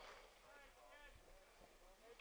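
Near silence, with faint distant voices.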